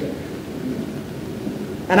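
A pause in a woman's speech filled with the steady, even hiss of an old recording. She starts speaking again just before the end.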